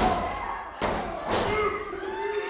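Heavy thuds of wrestlers' bodies hitting a wrestling ring's mat, three sharp impacts within about a second and a half, with a man's shouting voice near the end.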